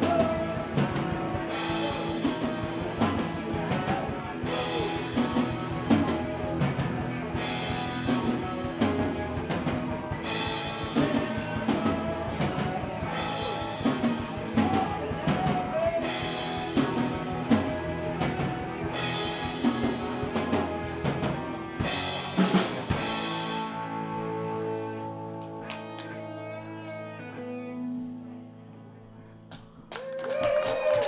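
Live rock band (drum kit, electric guitars, bass guitar, lead vocal) playing the end of a song. About 23 seconds in the band stops on a final hit and the last chord rings out, slowly fading.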